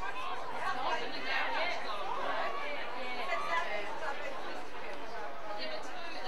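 Several voices calling and shouting over one another at an Australian rules football game, players on the field and onlookers at the boundary, with no single clear speaker.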